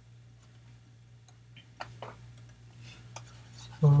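A few faint, scattered clicks and taps of a stylus on a drawing tablet, over a low steady electrical hum.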